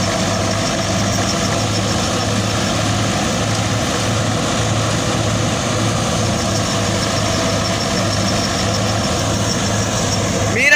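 Tractor engine driving a wheat thresher through its power take-off, running steadily under load with the thresher's drum whirring as straw is fed in. It is a continuous drone with a low hum that pulses slightly.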